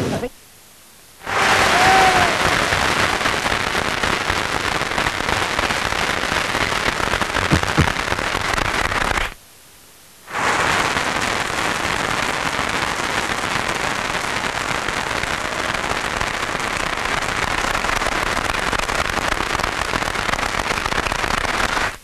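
A large dinner audience applauding steadily, with dense clapping and a brief silent break about nine seconds in.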